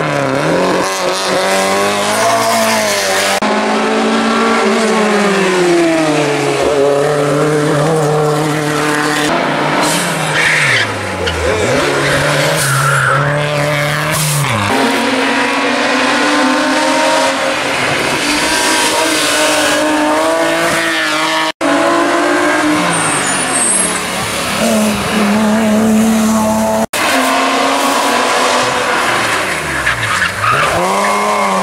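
Hill-climb race cars at full throttle up a twisty road, one after another: engines rev high and fall away again and again with gear changes and braking for the bends, with some tyre squeal. The sound cuts out sharply for an instant twice, about two-thirds of the way through and near the end.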